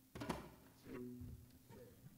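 A few soft, separate instrument notes, each starting sharply and fading, before the full band comes in.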